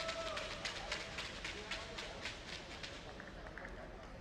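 Quick footsteps on a hard floor, about four a second, fading out about two and a half seconds in, with faint voices behind them.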